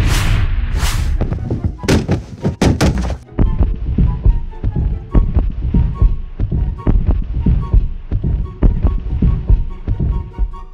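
Cartoon sound effects: a cannon shot with a hissing tail, then a long run of knocks and thuds as a brick wall is smashed and its bricks tumble down, densest in the first few seconds. Background music plays underneath.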